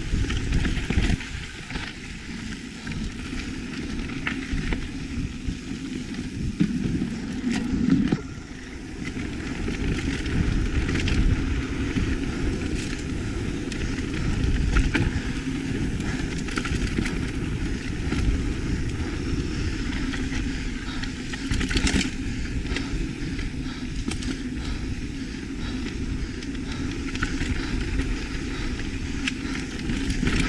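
Lapierre full-suspension mountain bike rolling fast over a dirt singletrack: a steady rush of tyre and air noise with the chain and frame rattling over roots and bumps. Two sharper knocks, about 8 seconds in and about 22 seconds in, are harder hits on the trail.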